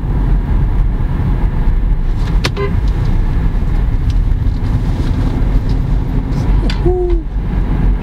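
Steady low road and engine rumble inside a moving car's cabin, with a single sharp click about two and a half seconds in and a short low tone near the end.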